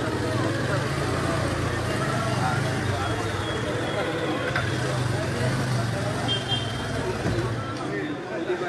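A motorcycle engine running at low speed as the bike rolls slowly up. Its steady hum fades just before the end, under the voices of a street crowd.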